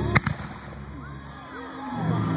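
Firework comets launching from their tubes: one sharp, loud bang about a fifth of a second in, then a smaller pop just after, followed by a quieter hiss as they climb.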